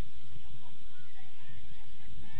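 Wind buffeting the microphone with a low, uneven rumble, over faint short shouts and calls from players across the pitch, about a second in and again near the end.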